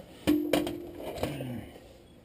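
Several light clicks and knocks as a handheld LED work light is picked up and switched on, with a short steady hum in the first second.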